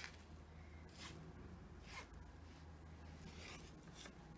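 Faint rustling of a wide ribbon being pulled through a bead and handled, a few soft brushing strokes about a second apart over a low room hum.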